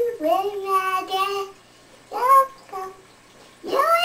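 A child's high-pitched, sing-song voice making wordless sounds: one longer phrase, then a few short bursts, with another starting near the end.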